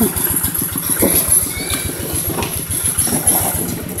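Two-wheel hand tractor's single-cylinder diesel engine running as it pulls a loaded trailer, with a fast, even chugging beat.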